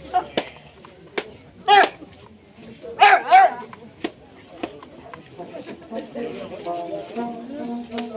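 A dog barking: one bark about two seconds in, then two more in quick succession about a second later. A few sharp clicks come between the barks, and quiet murmuring voices rise near the end.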